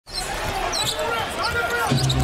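Basketball being dribbled on a hardwood court, with voices in the background.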